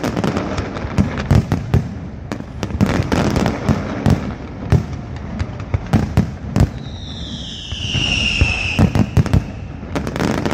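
Pirotecnia Alpujarreña aerial fireworks display: a dense, irregular run of shell bangs and crackle. About seven seconds in, a whistle slides down in pitch for about two seconds.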